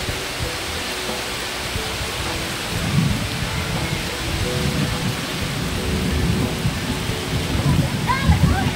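Heavy rain pouring in a storm with wind, a steady rushing hiss, joined from about three seconds in by low, irregular rumbles.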